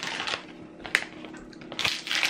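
A crumpled Doritos crisp packet crinkling and rustling as the last crumbs are tipped out of it, with a sharp crackle about a second in and louder rustling near the end.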